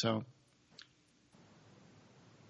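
A man's voice says "So", then a pause that is nearly silent, with one faint click just under a second in and a faint steady hiss of room tone.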